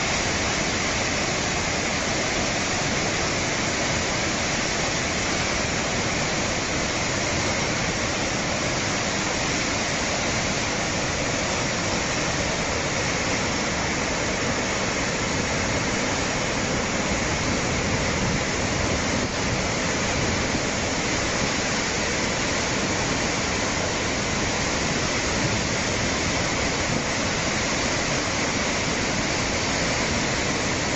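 Muddy floodwater rushing and churning through a river channel in full spate: a steady, loud rush of turbulent water that does not let up.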